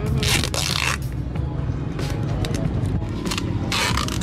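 Background music, with adhesive tape being pulled off its roll in two ripping pulls: one lasting most of a second near the start, a shorter one just before the end.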